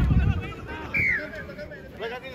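Rugby players shouting and calling to each other on the pitch, with one loud, high call about a second in that falls in pitch. A low rumble sits under the voices at the start.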